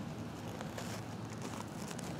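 Low, steady background noise with a few faint rustles.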